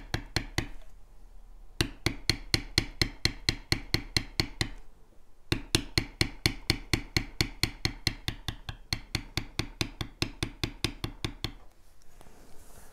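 Metal leather beveler tapped quickly with a maul as it is walked along a line in tooling leather, about five sharp taps a second. It pauses briefly about a second in and again about five seconds in.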